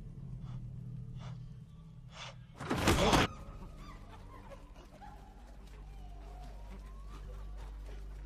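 Film soundtrack: a low steady drone, with one loud, short burst of noise about three seconds in, then faint wavering higher tones over the drone.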